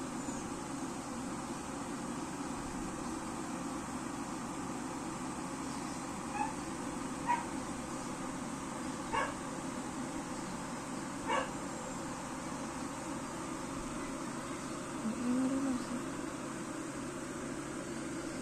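Steady background hum with four short, sharp yelps from an animal, spaced a second or two apart, and a brief whine near the end.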